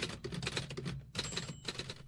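Vintage manual typewriter keys clacking in quick, irregular strikes over a faint low hum.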